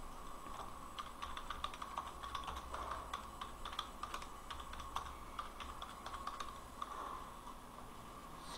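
Typing on a computer keyboard: a quick run of key clicks starting about a second in and stopping about seven seconds in, over a faint steady hum.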